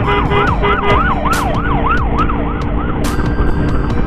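Emergency siren in a rapid yelp, its pitch sweeping up and down about four times a second, fading away about three seconds in, over the running noise of a motorcycle on the road.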